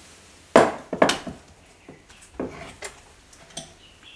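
Hard foot-shaped shoe props knocking and clattering in a suitcase as they are pulled from their mounts. A sharp knock comes about half a second in and another just after a second, followed by a few lighter taps.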